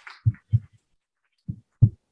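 Four dull, low thumps in two close pairs about a second apart.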